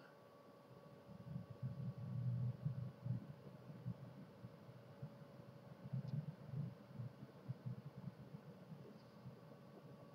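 Quiet room tone: a faint steady hum with a soft low rumble that swells twice and fades.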